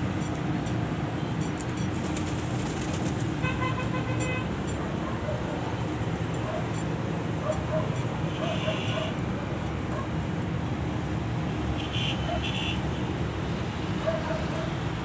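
Steady rumble of road traffic, with a short vehicle horn toot about four seconds in and a few brief high chirps later on.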